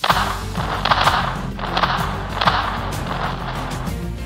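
Noisy sea-battle sound effects from a cartoon pirate show on a TV: a rushing noise that surges several times, over background music with a low steady bass.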